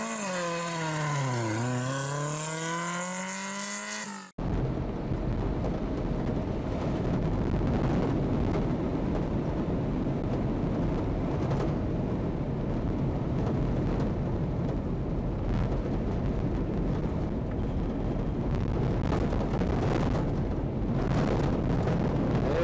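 A pitched sound effect that glides down and back up over about four seconds, then cuts off abruptly. It is followed by steady car engine and tyre noise from a car driving on a snowy road, heard from inside the car.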